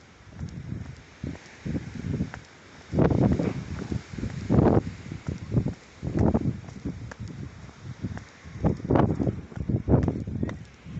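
Footsteps on a stone-paved path, heard as irregular low thuds, loudest about three seconds in and again near the end.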